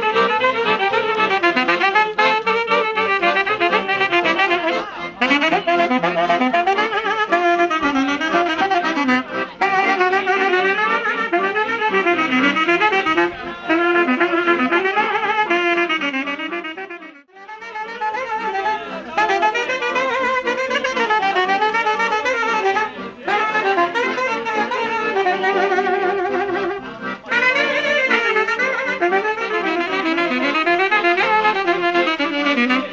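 Live Romanian folk music from two alto saxophones with a button accordion, playing a fast, ornamented melody. The sound drops out sharply for a moment about halfway through, then the tune carries on.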